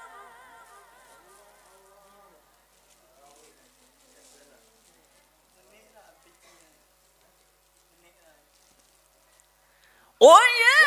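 Unaccompanied group chanting fades away over the first second or two, leaving near silence with faint, indistinct voices.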